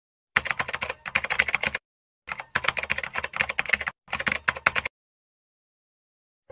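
Computer keyboard typing: fast runs of key clicks in three bursts, the first two about a second and a half each and the last under a second, with short silent gaps between.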